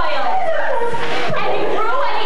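Several stage performers' voices talking and calling out over one another, lively and animated.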